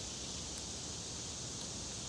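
Steady outdoor background noise with a faint high hiss and no distinct event.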